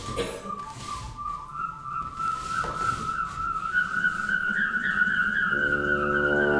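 A single high, thin whistling tone held throughout and slowly rising in pitch. Near the end the wind instruments of the quintet come in with a low sustained chord.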